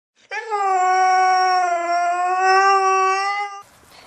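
Siberian husky howling: one long howl of about three seconds, dipping slightly in pitch at the start and then holding steady.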